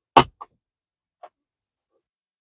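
Sturdy plastic cupholder insert clicking into place in a Tesla Model Y center-console cupholder as it is pressed down: a sharp click shortly after the start, a softer one just after, and a faint tick about a second later.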